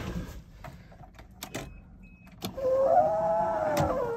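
A few sharp clicks as the ignition key is turned, then, about two and a half seconds in, a small electric motor in the 1988 Toyota FJ62 Land Cruiser starts up with a steady whine that rises a little and sags near the end. It is the truck's electrics coming alive after repairs to its rat-chewed wiring.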